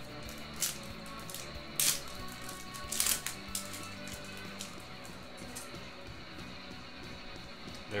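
Soft background music playing, with a few short, sharp rustles and slides of trading cards being handled, the loudest about two and three seconds in.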